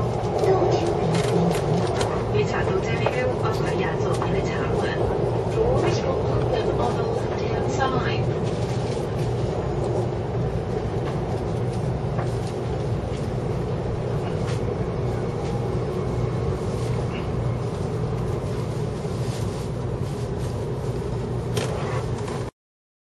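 Steady low rumble of a Taiwan High Speed Rail 700T train running at speed, heard inside the passenger car, with voices over it for the first several seconds.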